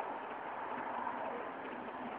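Steady background noise with no distinct sound standing out.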